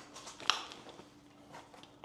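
A webbing belt and its buckle being handled and fastened at the waist: soft rustling with a sharp click about half a second in.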